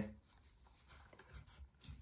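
Faint rustling and rubbing as a leather knife sheath and a firesteel's cord lanyard are handled, with a few small clicks in the second half.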